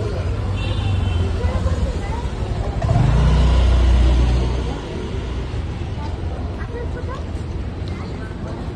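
Busy street ambience: vehicle traffic and people's voices in the background, with a louder low rumble from about three to nearly five seconds in.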